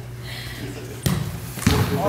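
Two sharp thuds of a soccer ball being struck, about half a second apart, the second the louder: a shot and the ball hitting something. They ring briefly in a large indoor hall.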